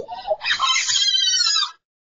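A high-pitched, drawn-out wordless cry from a young voice, bending and then falling in pitch before it cuts off.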